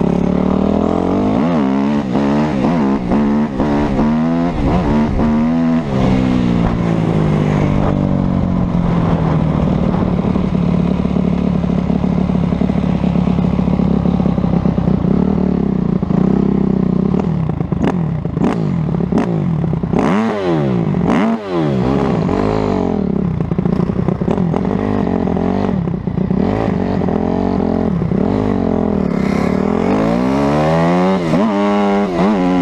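2007 Kawasaki KX250F's single-cylinder four-stroke engine under way, revving up and dropping back again and again as it is throttled and shifted. It holds steadier for a stretch in the middle before another run of revs.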